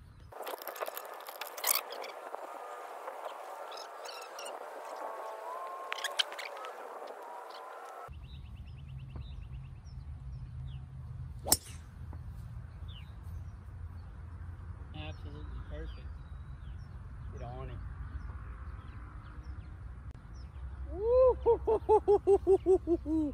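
A single sharp crack of a golf club striking the ball, about halfway through, over low wind rumble on the microphone. Near the end there is a loud, repeated warbling pitched sound.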